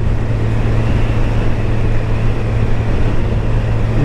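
1987 Kawasaki ZL1000's inline four-cylinder engine running at a steady cruise, heard from the saddle with wind rush over the microphone.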